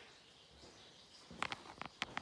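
Faint steady hiss of a ceiling bathroom-style exhaust fan running, then a quick cluster of four or five short, sharp squeaky clicks about a second and a half in.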